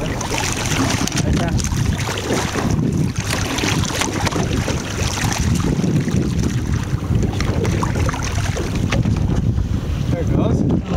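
Steady wind buffeting the microphone over water sloshing along a boat's side, with some splashing as a striped marlin is released by hand at the boatside and swims off.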